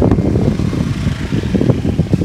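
Motor scooter engine running close by as the scooter pulls away, a loud low rumble.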